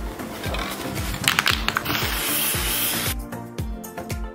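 Aerosol spray paint can hissing in one burst of about a second, a little past halfway through, as paint is sprayed onto the water in the tub. Background music with a steady beat plays throughout.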